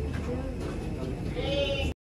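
People's voices over a steady low rumble, with a drawn-out, wavering vocal sound near the end; everything cuts off abruptly just before the end.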